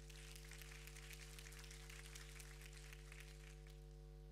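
Faint applause from a small group of people clapping at a table, dying away about three and a half seconds in, over a steady low hum.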